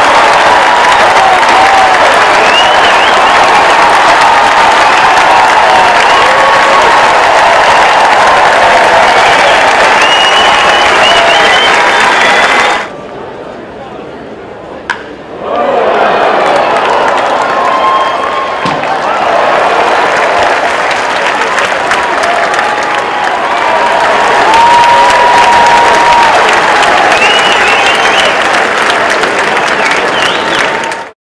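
Ballpark crowd cheering and applauding a hit, with many voices shouting over the clapping. The crowd noise drops away for a few seconds about halfway through, then the cheering picks up again for a second hit.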